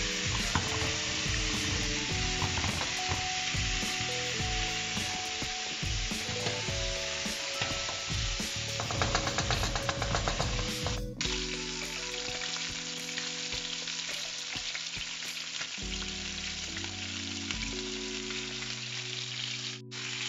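Onion and spice base frying and sizzling steadily in a pan, with a spoon stirring and scraping through it for about the first ten seconds.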